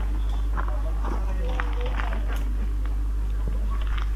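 Low voices of people nearby and a few footsteps on a rocky path, over a steady low rumble.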